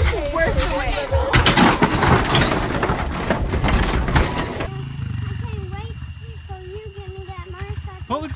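Crash and clatter of a giant Connect Four yard game toppling, with plastic discs and wooden blocks knocking together, amid voices. After a sudden cut about two-thirds of the way through, a dirt bike engine idles with a low steady pulse.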